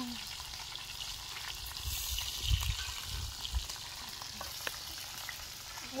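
Chicken and chicken skins frying in hot oil: a steady sizzle, with a few low rumbles about halfway through.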